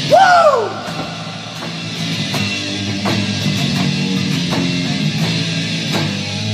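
Rock band playing an instrumental passage on electric guitar, bass guitar and drum kit, with steady drum hits. At the very start there is a short, loud vocal whoop whose pitch rises and then falls.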